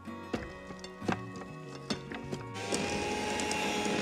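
Background music, then about two-thirds of the way in an electric hand mixer starts and runs with a steady whine. Its beaters are mixing flour into creamed butter, sugar and eggs for cake batter.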